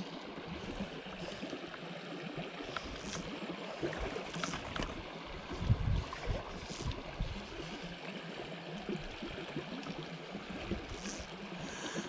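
A small, shallow stony stream running over a riffle: a steady rush of water, with a few faint brief swishes and a soft knock about six seconds in.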